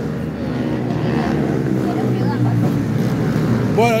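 Kart engines running steadily in the background, with a faint murmur of voices.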